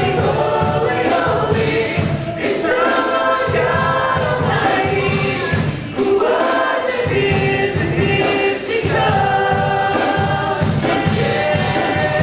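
Live contemporary worship band playing a slow praise song: several male and female voices singing together in long held phrases over acoustic guitar, bass, keyboard and drums.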